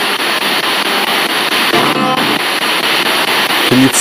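Radio spirit box sweeping through FM stations: a steady hiss of static with a brief snatch of broadcast sound, music or a voice, about two seconds in and another starting near the end.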